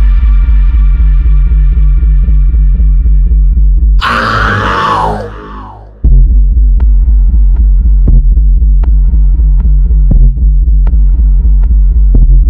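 Hip-hop instrumental beat with a loud, rapidly pulsing bass under a held synth chord that fades away. About four seconds in, a swooshing sweep effect replaces the beat for two seconds. The beat then comes back with sharp snare hits over the pulsing bass.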